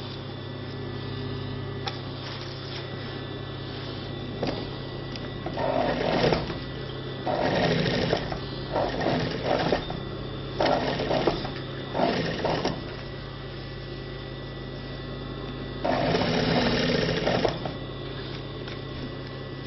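Juki industrial sewing machine stitching through a zippered denim bag panel in about six short runs, the longest, about a second and a half, near the end, with a steady low hum between runs.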